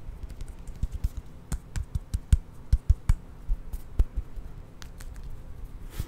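Fingernails tapping and clicking against each other close to a microphone: irregular sharp clicks with soft thumps, densest in the middle.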